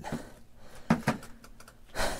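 A few short clicks and knocks about a second in, from hands and tools handling a skinned coyote head on a fleshing beam, over quiet room tone.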